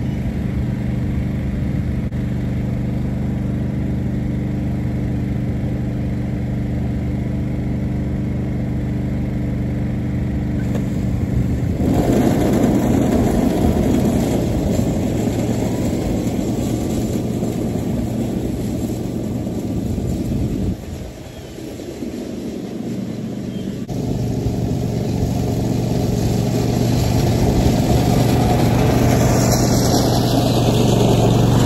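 Riding lawn mower's small petrol engine running steadily, then louder and rougher from about twelve seconds in as it drives and mows the long grass. The sound dips briefly a little after twenty seconds, then builds again as the mower comes up close.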